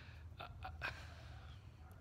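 A man's breath sounds in a pause between words: a short spoken "I" followed by faint breathy intakes, over a steady low hum.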